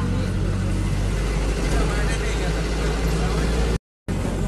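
Bus engine running with road noise, heard from inside the moving bus: a steady low drone with a few low engine tones. It cuts off abruptly just before the end.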